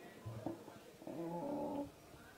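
A man's voice calling out twice: a short low cry, then a louder held call of under a second at a steady pitch.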